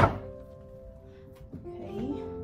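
A single sharp thump right at the start, dying away quickly, over steady background music.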